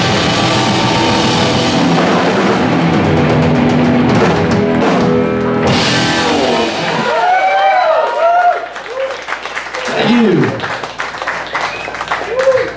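A live rock band of electric guitars and drum kit plays loudly to the end of a song, stopping about seven seconds in. The audience then whoops, yells and claps.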